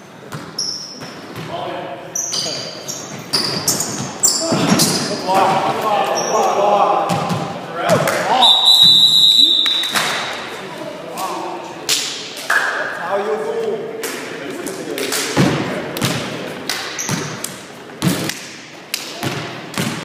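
Players' voices and chatter on a gym basketball court, with rubber sneaker soles squeaking on the hardwood floor and many sharp slaps and thuds. One longer high squeak about eight and a half seconds in.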